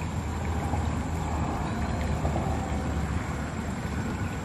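Steady outdoor rumble and hiss, heaviest in the low end, with no distinct knocks or calls standing out.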